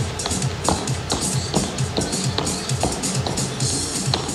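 Upbeat background workout music with a steady, fast beat, a little over two beats a second.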